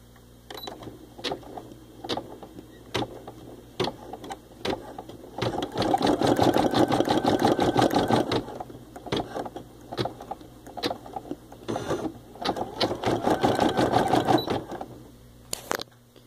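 Baby Lock Ellure Plus embroidery machine stitching out a design. Separate stitch strokes come at first, then two spells of rapid stitching a couple of seconds each, about five seconds in and again near the end, with slower strokes between.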